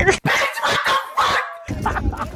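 A thin, tinny dog yelping and barking sound effect, cut in suddenly just after the start and cut off abruptly about a second and a half later.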